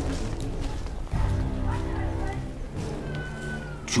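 Background film score of sustained, held tones, with a brief high note bending downward near the end.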